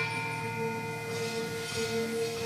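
Javanese gamelan playing softly, its bronze keyed instruments and gongs ringing in long, steady tones.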